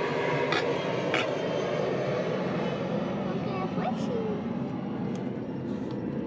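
Jet aircraft flying overhead: a steady, even noise that slowly fades, with a few faint clicks over it.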